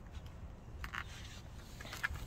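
Faint scuffing and rustling from a handheld phone camera being moved, with a few short scrapes about a second in and near the end, over a low steady rumble.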